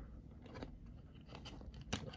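Faint handling of a plastic action figure and its display stand: a few light clicks and scrapes as the figure's feet are pressed onto the stand's pegs, with a slightly sharper click near the end.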